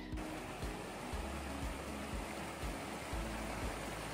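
Wind blowing across the microphone outdoors: a steady rushing hiss with irregular low buffeting rumbles.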